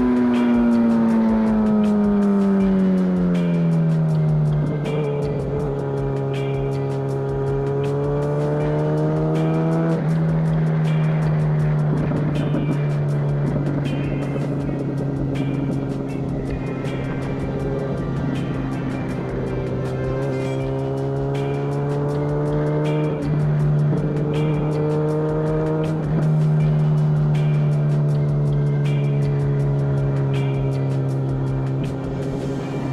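2017 MV Agusta F4 RR's inline-four engine through its SC Project aftermarket exhaust, heard onboard while riding: the revs fall over the first few seconds, then hold a steady cruising note, rising and dropping with throttle changes several times. A music beat runs underneath.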